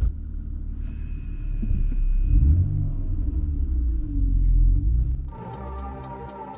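Low rumble of engine and road noise inside the cabin of a BMW E46, rising and falling in loudness. Music with a steady ticking beat takes over about five seconds in.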